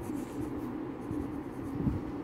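Pen writing on lined notebook paper: soft, irregular scratching strokes as a word is written, over a steady low hum.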